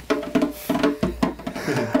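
Tombak (zarb), the Persian goblet drum, played by hand: a quick run of sharp strokes, about four or five a second, with a short ringing tone.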